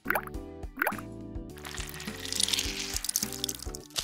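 Cartoon sound effects of a paint tube being squeezed and paint squirting and splattering: two quick rising glides in the first second, then a spattering hiss through the middle and end, over light background music.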